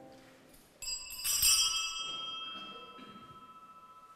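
Altar bells rung while the host is raised: a sudden bright jangle of several small bells about a second in, whose tones ring on and slowly fade.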